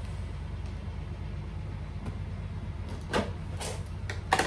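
Cardboard box being opened by hand, the taped top cut and the flaps pulled, giving two short scraping rustles near the end over a steady low background hum.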